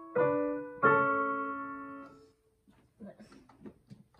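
Digital piano: two chords struck about half a second apart, left to ring and fading away over about a second and a half, then stopping. A short "okay" and a laugh follow near the end.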